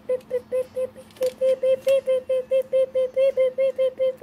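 A small furry toy animal squeaking: a quick, even run of short high-pitched squeaks, about five or six a second.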